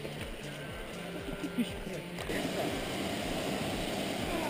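Stream water rushing over rocks as a steady hiss, with people laughing near the end.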